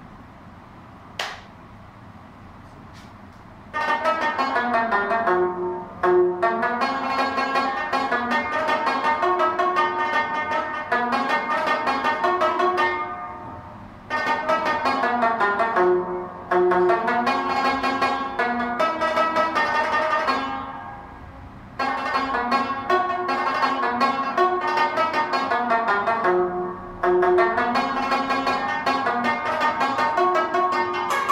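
Rabab played solo: fast plucked melodic runs that start about four seconds in, with two short pauses between phrases.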